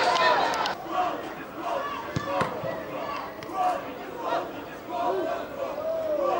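Several voices shouting and calling out across a football pitch, a dense clamour at first and then separate shouted calls, with a few sharp knocks.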